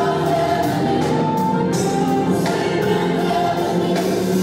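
Gospel praise team singing together as a choir, backed by a live band with drum kit and cymbals.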